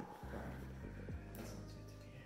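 Faint background music with steady low bass notes.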